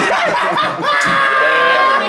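A group of people laughing loudly in reaction, ending in one long, high-pitched held shriek.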